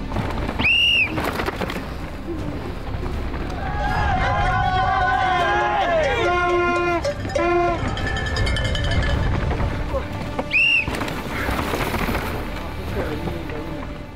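Mountain bike rattling and rumbling down a rough dirt trail, with spectators shouting in a burst between about four and seven seconds in and two shrill whistles, one about a second in and one near the end, over background music.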